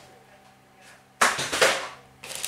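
A sudden rustling burst of paper and cardboard packaging being handled, lasting under a second, about halfway through, over a faint steady hum.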